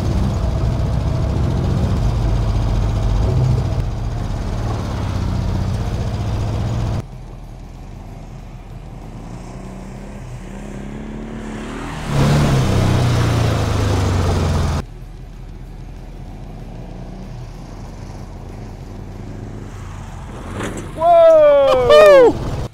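Dune buggy engine running and revving as the buggy drives off across dirt and again as it goes over a jump, with the sound dropping away sharply twice where the shots change. Near the end a voice lets out a loud falling call.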